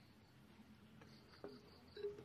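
Near silence with faint, high-pitched insect chirping that comes and goes, and a small knock with brief ringing about one and a half seconds in.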